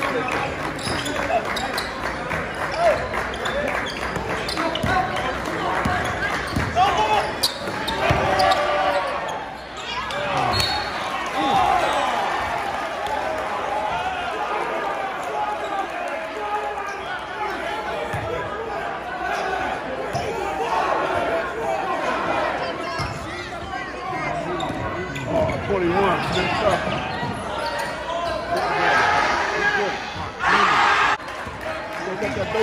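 Basketball bouncing on a hardwood gym floor during play, under the indistinct chatter of spectators echoing in a large gymnasium.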